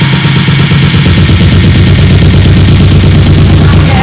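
Electronic dance music from a DJ set played loud over the sound system: a dense, bass-heavy rumbling passage with a fast buzzing pulse.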